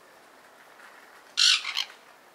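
Sun conure giving one short, harsh, raspy screech about one and a half seconds in, breaking into two or three quick pulses.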